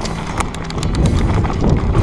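Mountain bike clattering down a rough dirt trail at speed: tyre rumble on the ground with a quick run of sharp rattles and knocks from the bike as it goes over bumps.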